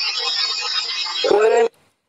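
Loud, steady hiss of an EVP (psychophony) recording, with a short voice sound near the end before the audio cuts off abruptly.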